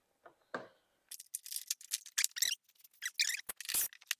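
Plastic parts squeaking, scraping and rattling as a headlight housing and its mounting bucket are worked by hand into a golf cart's molded plastic front body. The short squeaks and scrapes start about a second in and come thick and fast.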